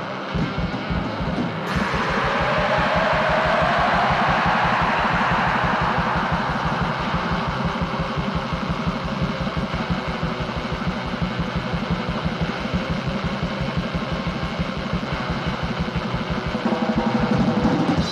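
Raw black metal: rapid, relentless drum beats under a wall of heavily distorted guitar, which swells up loud about two seconds in.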